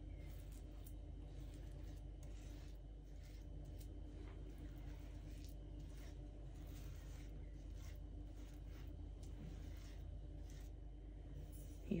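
Faint scraping and smearing of a metal spatula spreading thick poppy-seed filling over rolled dough, over a steady low hum.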